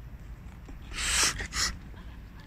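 Two short breathy bursts from a person, about a second in and again half a second later, with no voiced pitch.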